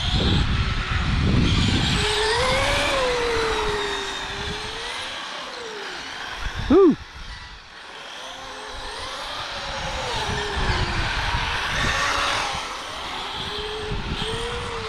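Electric RC cars running on asphalt, their brushless motors whining up and down in pitch with the throttle. There is a short, loud burst about seven seconds in.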